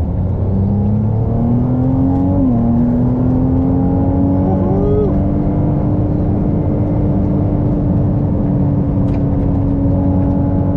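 Ferrari 296 GTB's twin-turbo V6 hybrid accelerating hard on track. Its pitch climbs, falls sharply at a gearshift about two and a half seconds in, then climbs slowly and steadily through the next gear.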